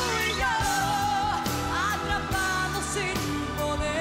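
Pop duet sung live by a male and a female singer, with melodic lines that bend and waver, over a full band accompaniment.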